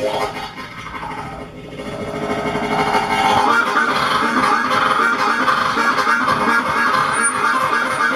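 Harmonica cupped in the hands against a microphone, played as a blues-style solo. It drops back about a second in, then swells up again from about three seconds into a loud, sustained passage.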